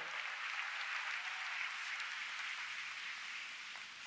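A large audience applauding, an even spatter of many hands clapping that holds steady and then fades away near the end.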